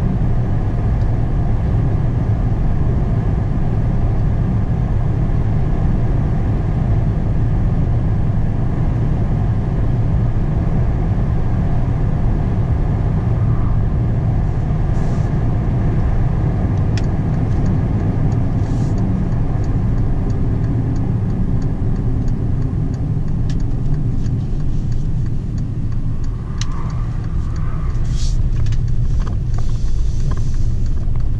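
Car cabin road noise: a steady low rumble of tyres and engine at highway speed. In the second half a light, regular ticking comes in. Near the end the car slows, and a few sharper crackles come as it turns onto a gravel drive.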